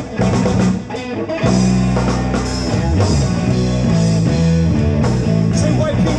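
Live amplified rock band playing, with drum kit, electric guitar and bass; the full band comes in about a second and a half in after a sparser opening.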